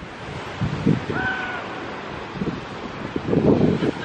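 Wind buffeting the microphone in irregular gusts, with a single short bird call about a second in.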